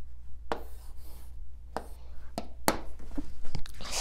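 Pen tip tapping and sliding on the glass of a Samsung touchscreen smartboard while a letter is written, with about four sharp taps spread over the few seconds. A low steady hum runs underneath.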